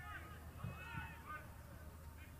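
Faint, distant shouts of soccer players on the field during a corner kick, over a low steady hum.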